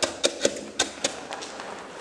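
Wooden float pressed and tapped into a bed of loose granular dry levelling fill to pre-compact it, giving a run of sharp clicks and crunches over the first second or so.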